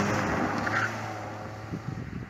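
A car driving away, its engine and tyre noise fading steadily as it recedes, with some wind on the microphone.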